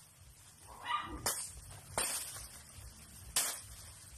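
Dry banana leaves and trunk sheaths being ripped off by hand: three sharp, crackling tears about a second apart.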